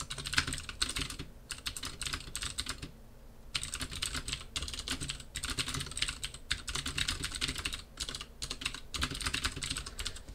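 Computer keyboard being typed on in quick runs of keystrokes, with a short pause about three seconds in.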